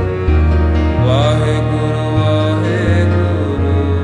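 Devotional Sikh simran music: a sustained drone with deep bass notes that change every second or so, and a voice chanting in long, sliding notes.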